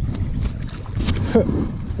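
Wind rumbling on the microphone, with a short spoken word near the end.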